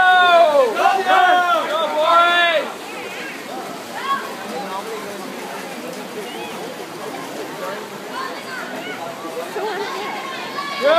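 Spectators cheering a swimming race: three long shouted cheers in the first couple of seconds. After them comes a steady wash of poolside noise, with swimmers splashing and faint scattered voices.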